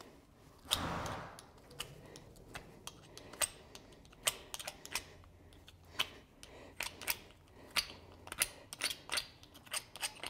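Hoof pick scraping and clicking against the steel shoe and sole of a horse's right hind hoof as it is picked out. The strokes are short and irregular and come faster in the second half, after a brief rushing noise about a second in.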